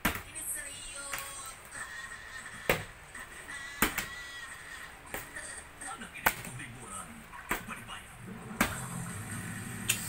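A small plastic water bottle being flipped again and again and knocking down on a vinyl floor, about one sharp knock every second or so. Most tosses fall over; the last, near the end, lands upright for a success. Faint background music and talk run underneath.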